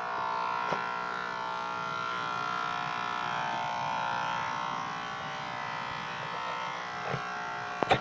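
Corded electric pet clippers running with a steady buzz while shaving a dog's belly fur. A couple of short knocks sound near the end.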